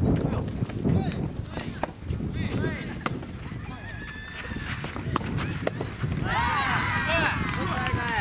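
Soft tennis rally: sharp racket-on-ball hits about a second or so apart over a steady low rumble of wind on the microphone, then several voices shouting together from about six seconds in as the point ends.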